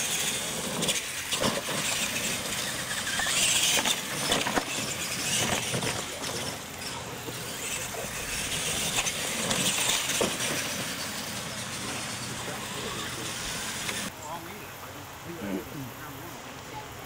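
Two radio-controlled monster trucks racing on a dirt track: their motors and tyres on loose dirt make a noisy whirr that swells and fades, ending abruptly about fourteen seconds in.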